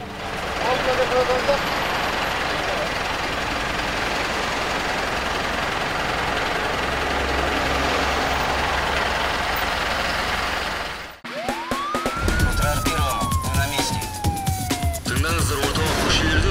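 A tow truck's engine runs steadily as its crane hoists a wrecked car onto the flatbed. After an abrupt cut about two-thirds of the way through, a siren sound effect rises briefly and then falls slowly, set over rhythmic music.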